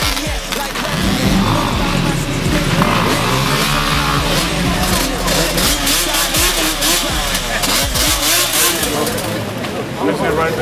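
Quad bike and dirt bike engines running and revving, mixed with crowd chatter and music.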